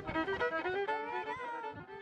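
Fiddle playing a quick tune, the melody running up and down in short notes and fading slightly near the end.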